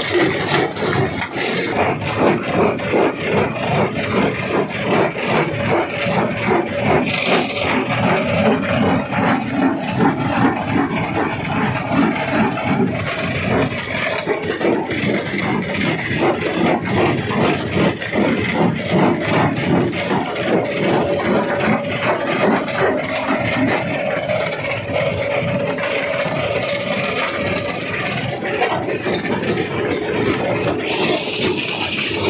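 Rock crusher working: stone knocking and clattering continuously in a dense, irregular run over a steady machine drone.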